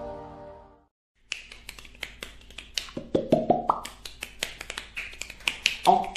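Music fades out, and after a brief silence rapid, irregular sharp hand slaps begin, several a second, as in a fast percussive massage.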